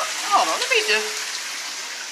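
Heavy rain pouring down, a steady hiss of water, with a brief voiced exclamation about half a second in.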